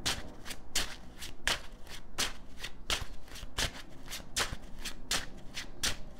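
A deck of tarot cards being shuffled by hand: a steady run of short card slaps, about two a second.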